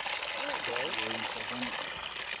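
Water pouring steadily out of the open end of a white PVC watering pipe, a constant rushing splash as the line runs.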